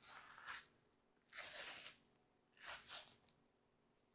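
Silver skin being peeled off a rack of pork back ribs with a paper towel: three short, quiet tearing rips about a second apart.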